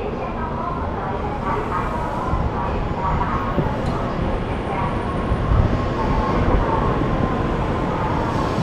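Shinkansen bullet train moving slowly along the platform, its steady running noise building slightly as the coaches pass.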